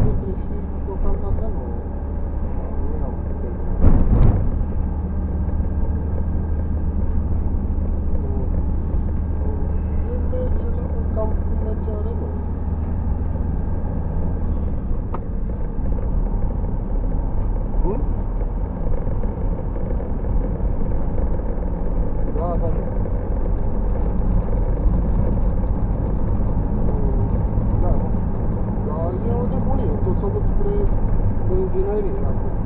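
Car cabin noise while driving: a steady low engine and road drone that drops in pitch about halfway through, with a sharp knock about four seconds in.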